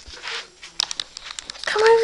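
Crinkling, crackling clicks close to the microphone for about a second and a half, then a high-pitched voice starts speaking near the end.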